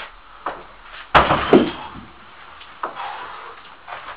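A 120 kg atlas stone lands on a platform of stacked wooden pallets with one sharp, heavy thud about a second in. A few faint knocks follow as the lifter moves on to the next stone.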